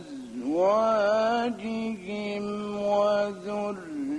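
A male Quran reciter's voice in the melodic mujawwad style, drawing out long ornamented notes. It glides upward near the start, then holds long, gently wavering tones with a few short breaks.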